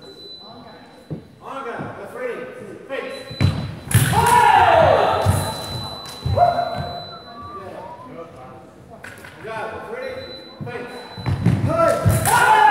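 Sabre fencers' feet stamping on the piste in a fast exchange, each stamp followed by a loud shout that falls in pitch, the loudest about four seconds in, another at about six seconds and a third near the end. The sound rings in a large sports hall.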